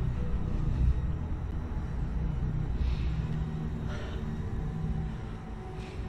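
Low, steady rumbling drone of a suspense film score, held without a break.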